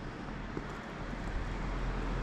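Outdoor street ambience: a steady hiss with a low rumble that grows a little louder about halfway through.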